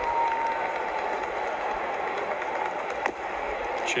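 Steady murmur of a ballpark crowd, with one sharp crack about three seconds in as a pitch reaches the plate for strike two.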